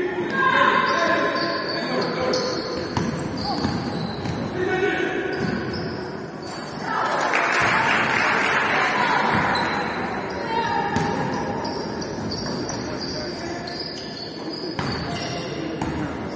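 Live basketball game sounds in a large hall: a ball dribbling on the wooden court, sneakers squeaking on the floor, and players and coaches calling out. About seven seconds in the noise swells for a few seconds before easing off.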